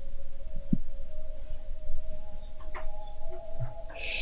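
Soft background film music: one held note, joined by a second, slightly higher note about two and a half seconds in, over a low hum.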